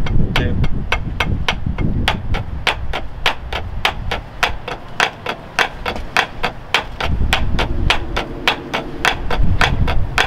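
Two pairs of wooden drumsticks playing a steady marching-percussion sticking exercise together on a rubber practice pad, about four or five sharp strokes a second. Each figure's first tap is played as a short buzz stroke.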